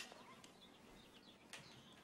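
Near silence: faint handling of a leather-bound notebook with a brass button clasp, a small click at the start and another about a second and a half in, with faint bird chirps in the background.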